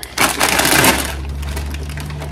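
Plastic crisp packet crinkling loudly as it is crumpled and pushed into a tote bag, for about the first second. A low steady hum follows.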